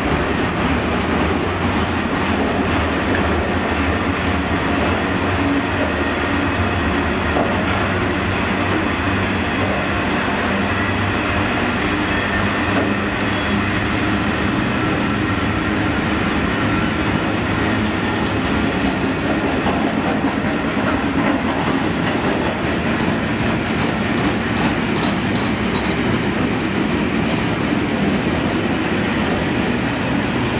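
A long freight train of wagons loaded with steel coils rolling past at a steady pace, its wheels running continuously over the rails.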